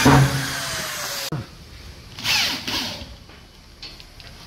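Electric drill-driver driving a screw into a WPC louver panel on a plywood ceiling: a run of about a second and a quarter whose pitch sinks as the screw bites, cut off suddenly, then a shorter run about two seconds in.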